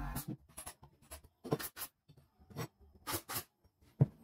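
A hand brushing sawdust across a plywood sheet: a series of short, irregular rubbing swishes, some in quick pairs.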